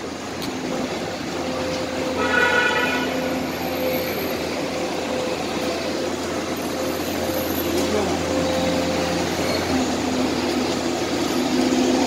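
Busy street traffic: a steady wash of passing motorbike and car engines, with a short pitched tone about two seconds in.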